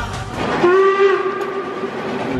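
A steam locomotive's whistle blowing one long, steady blast that starts about half a second in.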